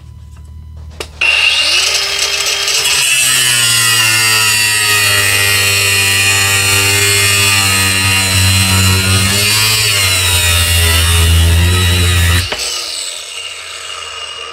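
Ryobi 18V brushless angle grinder switched on about a second in, spinning up with a rising whine, then cutting through a steel brake push rod with a loud, steady grinding screech. The pitch sags under load near ten seconds. It is switched off about two seconds before the end and winds down.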